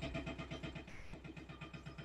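Rapid, steady mechanical pulsing, about eleven beats a second, from machinery at work nearby: ongoing building or repair work that is expected to be finished within a week.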